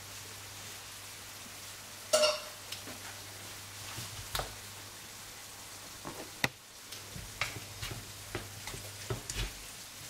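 Plant-based mince in tomato sauce and stock sizzling in a nonstick frying pan while a wooden spatula stirs it, scraping and tapping against the pan in short ticks from about four seconds in. There is a brief louder clatter about two seconds in.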